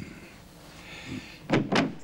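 Two loud thuds in quick succession near the end, like a door being knocked on or pushed open, over a faint hiss.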